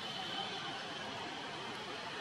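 Steady outdoor background noise with a faint, thin high tone through the first second or so.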